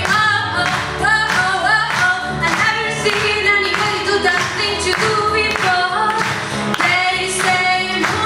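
A choir of female voices singing a song, with sustained low accompanying notes underneath.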